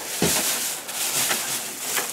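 Dry straw bedding rustling and crackling as it is pushed and spread by hand in a rabbit pen, with a soft thump just after the start.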